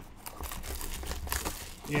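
Plastic wrapping crinkling and tearing as a Panini Chronicles soccer card box is ripped open by hand, a soft uneven rustle with small clicks.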